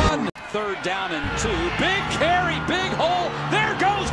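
Music with a high singing voice, coming in after a brief break in the sound just after the start; the bass comes back in about a second later.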